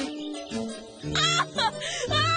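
Background music, with a young girl's high-pitched giggling coming in about a second in.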